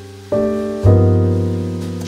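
Soft jazz instrumental with piano chords over a deep bass line: a chord comes in about a third of a second in and a low bass note about a second in, each left to ring and fade.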